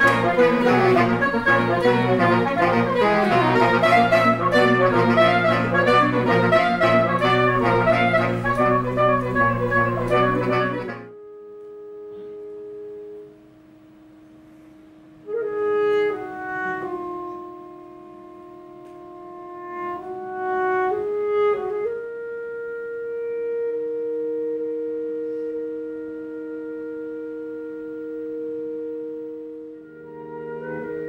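Saxophone quartet playing live. A fast, busy passage breaks off suddenly about eleven seconds in and gives way to slow, quieter held chords that change every few seconds.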